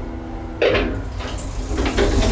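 1950 Otis traction elevator finishing its run: a steady hum, then a sudden clatter about half a second in as the car's door starts sliding open at the floor.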